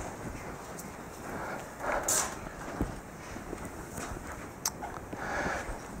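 A pause in speech: quiet hall room tone with faint footsteps and a few soft rustles and clicks.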